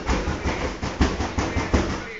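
Foil balloon crinkling and rustling as it is pressed and rubbed between hands, a dense run of crackles that begins and stops abruptly.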